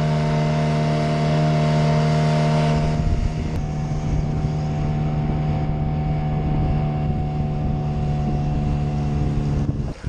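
Outboard motor of an RNLI Y-class inflatable running steadily at speed, with wind and water rushing past. The engine note cuts off abruptly near the end.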